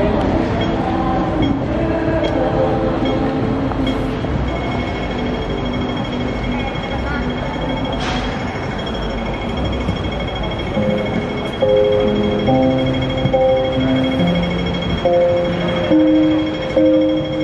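Street noise with passers-by talking, then about twelve seconds in a backing track starts through a small portable busking amplifier, playing slow, held chords as a song's intro.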